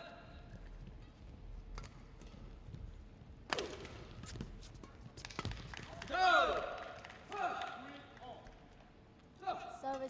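Badminton rally in a large hall: a few sharp racket strikes on the shuttlecock, the loudest about three and a half seconds in, followed by loud voices calling out around the sixth to eighth second as the point ends.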